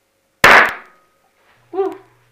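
Hydrogen-filled washing-up-liquid bubbles in a cup ignited by a lighter flame: one loud, sharp bang about half a second in that dies away within half a second. A short vocal exclamation follows near the end.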